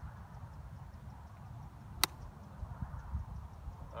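A golf iron strikes a ball in a one-handed chip shot: one short, crisp click about halfway through. Under it runs a steady low rumble.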